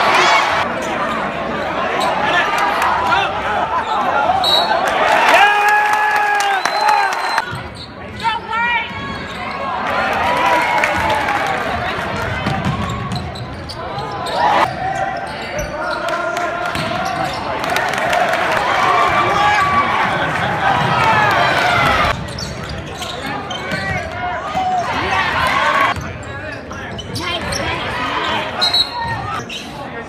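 Live basketball game sound heard from the bleachers in a gymnasium: a basketball dribbling on the hardwood amid spectators talking and calling out, echoing in the large hall.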